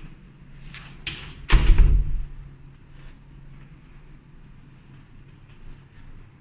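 Apartment entrance door being opened: two sharp latch and handle clicks, then a heavy thud about a second and a half in as the door swings through, followed by faint room hum.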